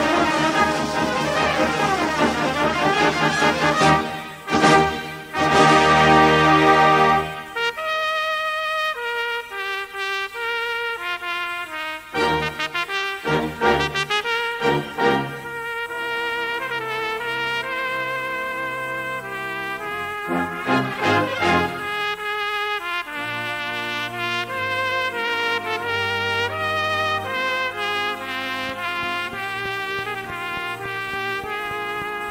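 Brass band accompanying a solo cornet in a slow melody with variations. Loud full-band chords for the first seven seconds, then a lighter texture with runs of quick notes.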